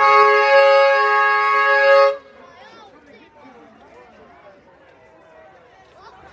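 A vehicle's two-tone horn sounding one long, steady honk that cuts off about two seconds in, followed by quieter crowd chatter.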